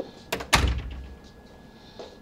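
A door latch clicks, then a door bumps to with a deep thud just after half a second in.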